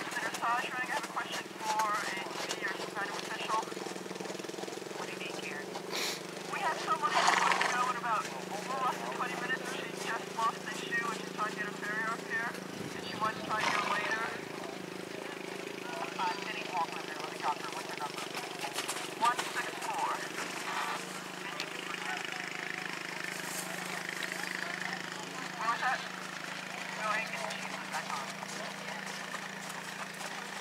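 Indistinct voices of people talking at a distance, in scattered snatches, over a steady low hum that runs throughout.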